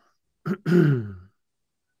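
A man clearing his throat once, about half a second in: a short rasp followed by a voiced rumble that falls in pitch.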